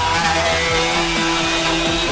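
Loud, harshly distorted electronic mashup music, with several long held tones sounding over a dense wall of noise.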